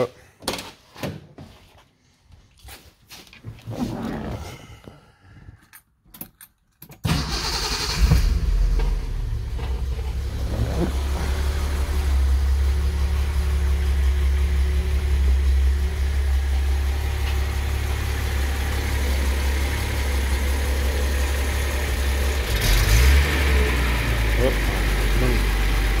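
Datsun L28 fuel-injected straight-six starting from cold: after a few scattered clicks and knocks, it catches suddenly about seven seconds in and then idles steadily.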